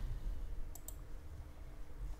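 Two faint, short clicks close together about three-quarters of a second in, from the computer being worked, over a low steady hum.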